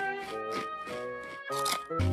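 Cartoon background music: sustained instrumental notes shifting in pitch, with a brief noisy sound effect about three quarters of the way through.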